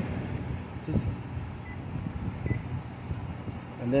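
Low steady background noise, with a faint click about a second in and two short, faint high beeps as the buttons of a digital clamp meter are pressed to zero it.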